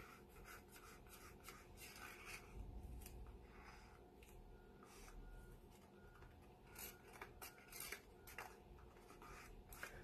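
Near silence with faint, scattered rubbing and small clicks: a stick scraping acrylic paint into plastic cups, with latex-gloved hands moving.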